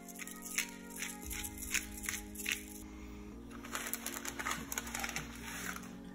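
Background music of held chords, over a pepper mill grinding black pepper: a run of sharp dry clicks about three a second, turning into a denser grinding rasp after about three and a half seconds.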